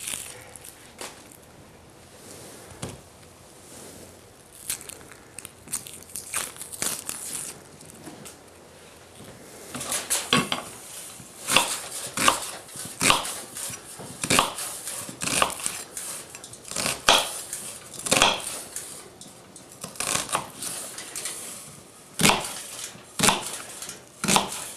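An onion is peeled by hand, its dry papery skin giving faint crackles. From about ten seconds in, a knife slices through the onion onto a plastic cutting board in a run of sharp chops, roughly one to two a second.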